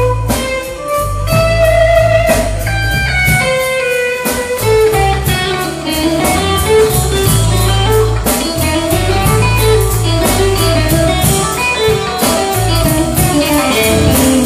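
Live blues trio playing an instrumental stretch: electric guitar leads with long, bending sustained notes, then breaks into quicker runs, over a steady electric bass line and drum kit with ride cymbal.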